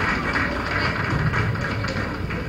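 Indistinct crowd noise: a steady haze of many sounds with a low rumble and no clear words.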